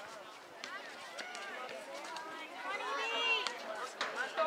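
High-pitched voices shouting and calling out, several overlapping, with the loudest call about three seconds in. A few faint sharp knocks are heard among them.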